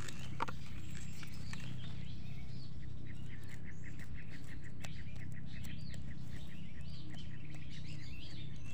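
A bird chirping in a quick, even series of short notes, heard from about three seconds in, over a steady low background noise.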